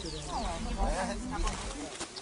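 Several people's voices talking indistinctly close by, their pitch rising and falling, with a low rumble underneath.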